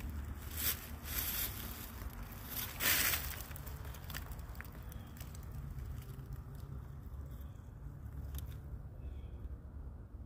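A steady low rumble, like wind buffeting the microphone, with a few brief rustles in the first three seconds, the loudest about three seconds in.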